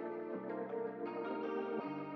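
Electric guitar melody loop from a trap beat playing back, sustained chords with chorus and echo effects, changing chord about a third of a second in and again near the end.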